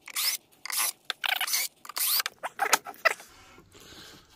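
Cordless drill/driver backing the screws out of the amplifier plate of a Dual TBX10A powered subwoofer box, run in several short bursts over about three seconds, some with a rising whine as the motor spins up.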